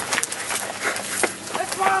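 Running footsteps thudding on grass, with the handheld camera jolting at each stride, as several people sprint; a shouted "Come" near the end.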